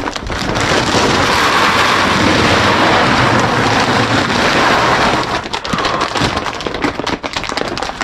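Dry feed pellets pouring from a sack into a bin in a steady rush for about five seconds, then dwindling to a scattered patter and rattle.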